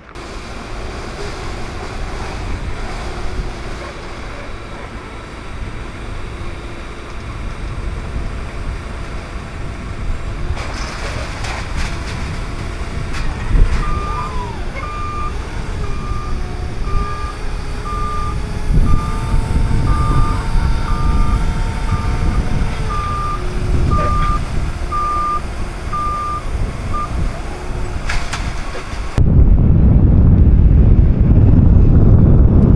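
Propane-powered Yale forklift's reversing alarm beeping at about one beep a second over the hum of its engine, starting about halfway through. Low wind rumble on the microphone underneath.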